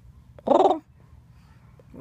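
One short, harsh, animal-like call about half a second in, otherwise a faint low hum.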